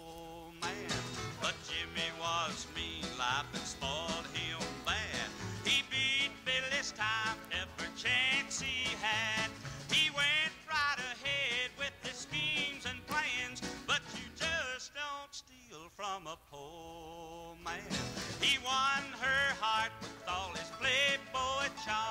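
A country song performed live by a band, on a 1959 radio transcription.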